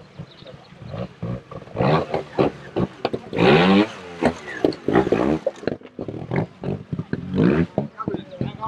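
Trials motorcycle engine blipped in short, sharp revs as the bike climbs over rocks, with knocks of tyres on stone. The biggest rev rises and falls about halfway through, and another comes near the end.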